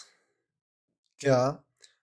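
A single short spoken word about a second in, with near silence around it.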